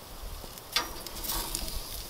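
A metal spatula clicks onto a perforated metal grill pan and scrapes across it under the grilled shrimp, starting a little under a second in.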